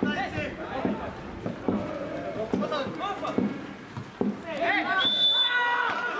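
Footballers shouting and calling to one another across a pitch with no crowd, with a few short thuds mixed in.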